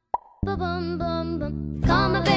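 A single hollow mouth pop, the song's signature cheek pop made by flicking a finger out of the mouth, sharp and short with a brief falling pitch, in a moment of silence. About half a second in, the backing music and vocal harmonies come back in.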